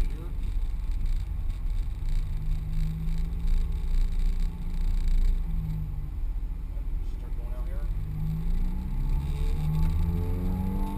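Ferrari F430 Scuderia's V8 engine heard from inside the cabin, pulling through the revs under way. Its pitch rises about two seconds in and again near the end over a steady low rumble.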